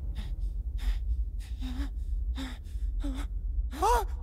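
A cartoon character's voice gasping for breath, a series of about six quick gasps roughly every two-thirds of a second, breaking into a voiced cry near the end. A steady low rumble runs underneath.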